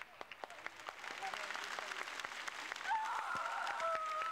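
Studio audience applause builds up. About three seconds in, a woman's wavering, wailing cry rises over it as she sobs into a telephone.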